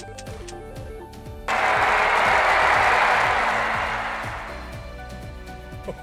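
Background music, then about a second and a half in a sudden burst of applause and cheering, a sound effect for the winning spin, that fades away over about three seconds.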